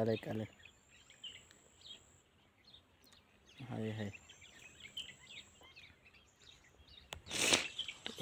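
Faint rural outdoor ambience with scattered small bird chirps, broken by a few short spoken words. Near the end comes one brief, louder rush of noise.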